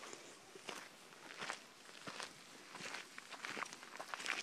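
Footsteps crunching on a dirt trail, a faint step roughly every three-quarters of a second.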